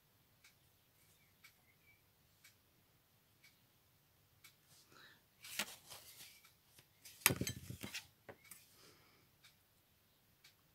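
Small hand tools being handled on a work table: a short clatter of clicks and light clinks about halfway through and again a little later, as one tool is put down and tweezers are picked up. Faint ticking runs underneath, about once a second.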